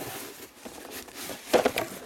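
Cardboard box being opened by hand, with the rustle and crinkle of packing peanuts and plastic anti-static bags inside. There is a brief, louder scrape about one and a half seconds in.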